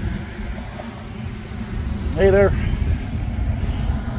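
Wind buffeting an outdoor microphone: a steady low rumble throughout, with a brief vocal sound a little after two seconds in.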